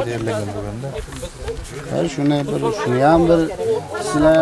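Men's voices talking in conversation.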